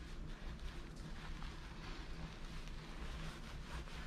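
Faint soft rubbing of hands scrubbing shampoo into a wet dog's face fur, over a steady low hum.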